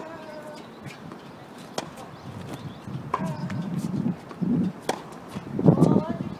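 Tennis ball being struck back and forth by rackets in a rally, about six sharp hits roughly a second apart, with short vocal sounds from the players after some of the strokes.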